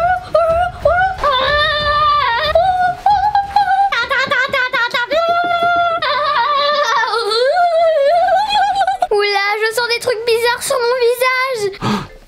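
A girl screaming and wailing in long, high-pitched cries, one after another, with a wavering pitch. She is reacting to the burn of hot sauce on a lollipop she has just tasted.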